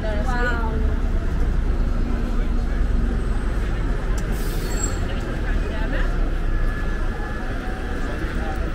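Busy city-street traffic rumbling steadily, with a red double-decker bus running in the road alongside and passers-by's voices, one brief falling voice near the start. A short hiss cuts through about halfway in.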